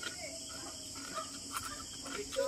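Steady, high-pitched chirring of insects in the background, with a few faint clicks of a metal spoon working into a balut egg.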